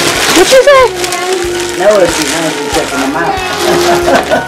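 Young children's voices, high and gliding in pitch, over music with steady held notes.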